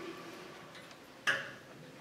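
A single short, sharp click about a second and a quarter in, over quiet room sound.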